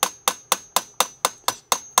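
Hammer tapping a metal punch, about four even taps a second, each with a short metallic ring. The punch is driving the pivot pin out of a Carryon GB-120 mobility scooter's tiller knuckle so the loose knuckle can be replaced.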